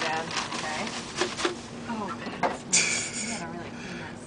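Plastic bag rustling and a few light knocks of handling under low voices, with a short steady hiss about three seconds in.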